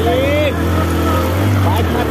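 Bajaj Platina motorcycle's single-cylinder engine running steadily under way, its low note rising slightly about halfway through, with voices calling over it.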